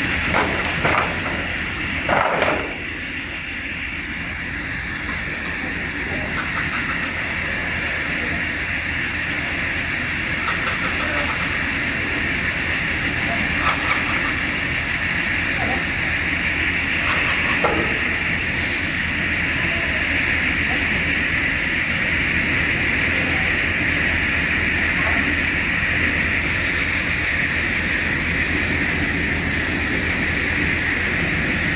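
Multi-blade rip saw line running in a wood-processing factory: a steady high whine over a low rumble, with a few knocks of timber on the machine, the loudest about two seconds in.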